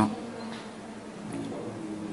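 A steady, low buzzing hum with no speech over it.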